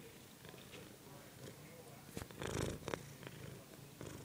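A domestic cat purring softly close to the microphone, with one brief louder noise about two and a half seconds in.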